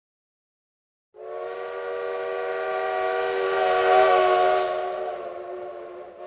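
A train whistle sounding one long chord of several steady tones. It starts about a second in, swells to its loudest near the middle and fades toward the end.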